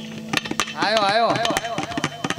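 Sharp, irregular percussion strokes on the tabla, with a short vocal cry whose pitch wavers up and down about a second in.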